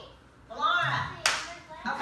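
A single sharp hand clap about a second in, between bits of speech.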